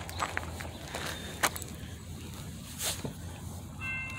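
Faint low rumble with a few short clicks and knocks; just before the end the horn of the approaching Norfolk Southern SD70ACe-led freight starts sounding in the distance, a steady chord of several notes.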